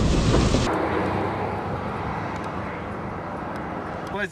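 Steady rushing wind and vehicle noise with a deep rumble, heard from inside a car. It drops abruptly at an edit about two-thirds of a second in to a quieter, even hiss that slowly fades.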